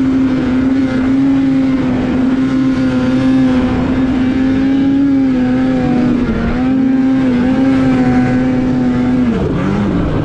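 Polaris mountain snowmobile's two-stroke 850 engine running under the rider, held at steady high revs with a brief waver about six seconds in. Near the end the revs fall away as the throttle is eased.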